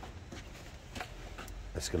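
Quiet background with a low rumble and a few faint soft clicks; a man starts to speak near the end.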